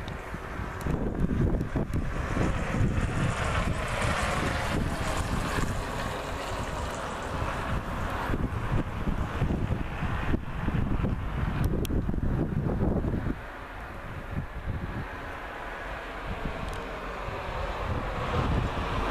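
Wind buffeting the microphone in uneven gusts, a low rushing noise that eases off about thirteen seconds in.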